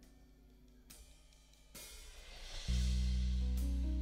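Live band starting a song. After a quiet moment, a cymbal swell builds from a little before the halfway point. About two-thirds of the way in, the band comes in with a loud, held low chord.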